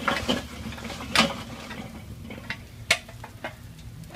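Lit charcoal briquettes clattering out of a metal chimney starter into a kettle grill, with scrapes and knocks of metal as the coals are pushed out. A run of sharp clanks, the loudest about a second in and near three seconds.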